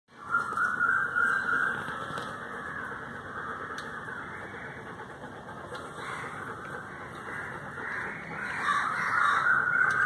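Toothbrush scrubbing a golden retriever's teeth, a steady brushing noise that is louder in the first couple of seconds and again near the end.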